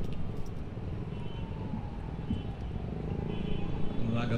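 Steady low rumble of outdoor background noise, with faint high-pitched tones about a second in and again near the end.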